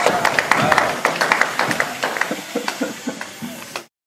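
Scattered hand clapping with voices talking over it, fading down and cutting off shortly before the end.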